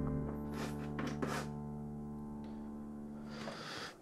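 A digital keyboard's piano voice holding a chord that slowly fades away, with a couple of faint soft clicks in the first second and a half. The sound drops off abruptly at the very end.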